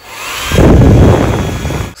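A Rowenta 1700-watt hair dryer switched on and running: a faint rising whine as the motor spins up, then a loud rush of blown air. It stops near the end.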